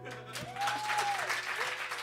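Audience applauding as the last guitar chord of the song rings on beneath the clapping, with one voice giving a long cheer in the middle.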